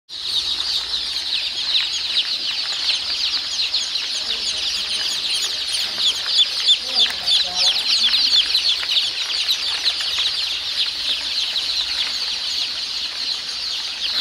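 A large crowd of young chicks peeping all at once, a dense, continuous chorus of high-pitched cheeps.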